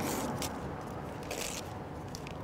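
Parchment paper rustling softly as a baked paper packet is pulled open by hand, two faint crinkles over a steady low background hiss.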